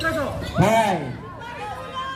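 A loud shout from a voice that rises and falls in pitch, about half a second in, over crowd chatter and background music.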